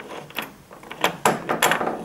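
Brass euro cylinder lock being slid out of a UPVC door's lock case by its key: a series of metal clicks and scrapes as the barrel comes free.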